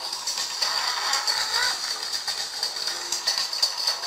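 Kart-racing game audio, music and kart sound effects, playing at full volume through a Doogee F5 smartphone's small loudspeaker. It sounds thin and tinny with no bass, and a steady high tone runs underneath.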